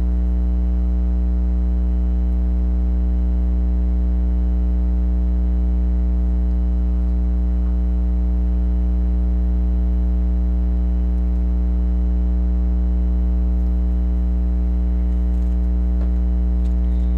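Loud, steady electrical mains hum: a low pitched drone with a buzzy stack of overtones that does not change.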